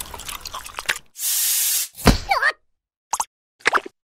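Cartoon sound effects: a short hissing whoosh, then a gliding squeaky sound and two short blips, separated by dead silence.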